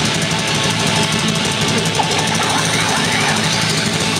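Metal band playing live: loud distorted guitars and bass with drums, a dense and unbroken wall of sound with sustained low notes.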